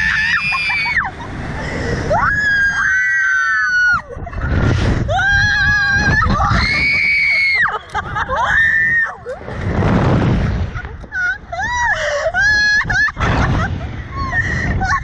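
Two women screaming on a slingshot ride: a string of long, high screams of about a second each, some sliding up or down in pitch, with a low rush of wind on the ride's microphone underneath.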